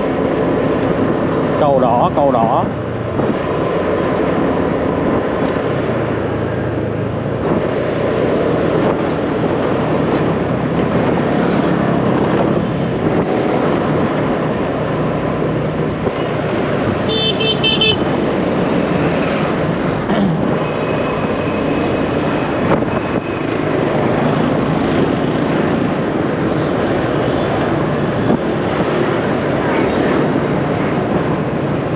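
Busy city street traffic heard from a moving motorbike: a steady mix of motorbike engines and road noise, with occasional horn toots, the clearest a short high one a little past halfway.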